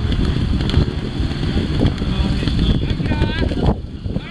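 Wind buffeting the microphone with a steady low rumble, and a voice calling out briefly about three seconds in.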